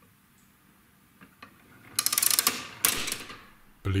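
Escapement of a wooden Duodecimus grasshopper clock going wrong: a couple of faint clicks, then about two seconds in, two loud bursts of rapid clattering as the toothed escapement wheel races against the pallets. The push pallet is disengaging too forcefully and lets go before the pull pallet has engaged, so the wheel gets away.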